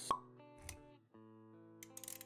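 Intro sound effects over music: a sharp pop right at the start, a low thump about halfway through, then sustained music chords with quick clicks near the end.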